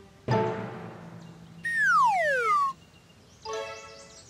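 Cartoon soundtrack: a musical note starts sharply just after the start and fades, then a falling whistle glide about a second long, then a short note near the end.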